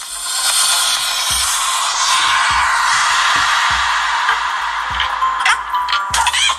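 Music from a cartoon video playing loudly through the Cubot Rainbow smartphone's built-in loudspeaker, turned up, with almost no bass.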